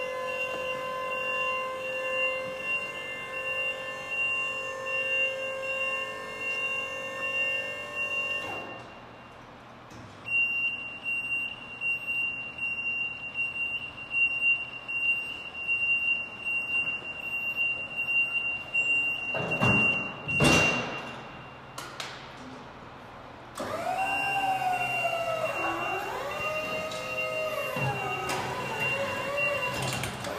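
Skyjack SJ3226 electric scissor lift in operation: a steady electric motor whine while the platform comes down, with a steady high alarm tone. There is a thump about twenty seconds in, then a whine that rises and falls as the lift drives.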